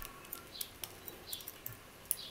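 Faint metallic ticks and scrapes from a picked City R14 pin-tumbler euro cylinder as its plug is turned with the tension wrench and pick in the keyway, scattered clicks a few times a second.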